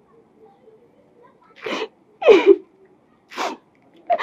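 A woman crying: three short sobbing bursts, each falling in pitch, the loudest at about two seconds.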